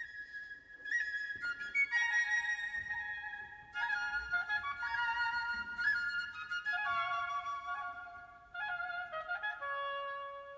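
Orchestral woodwinds playing a slow passage: a high flute line alone at first, joined after a couple of seconds by other woodwinds in held chords.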